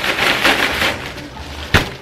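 Plastic carrier bag full of small wrapped chocolates rustling as it is shaken and handled, then a single sharp knock near the end, the loudest sound.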